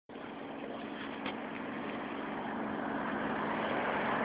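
City bus approaching along the road, its engine hum and road noise growing gradually louder.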